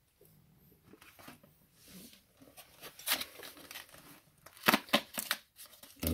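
Cardboard box of Tassimo T-discs being handled and rustled as a milk disc is pulled out of it, with a sharp click about three seconds in and a quick run of clicks and knocks near the end.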